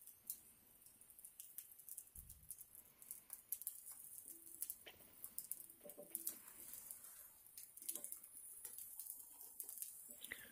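Faint, irregular crackling and clicking of burning pine cones, with a single dull thump about two seconds in.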